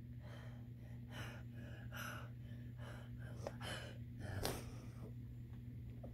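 A child breathing hard and close to the microphone, a soft breath about every second, over a low steady electrical hum.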